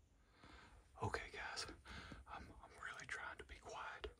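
A man whispering excitedly, starting about a second in.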